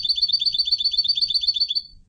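European goldfinch singing a fast trill of evenly repeated high notes, about eight a second, which stops shortly before the end.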